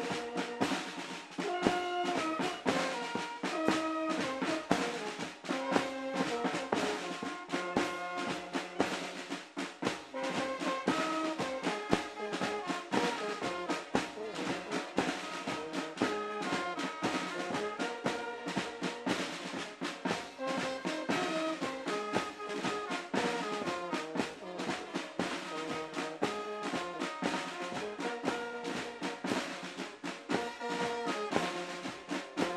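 Marching band playing: snare drums beating and rolling without a break under a brass melody.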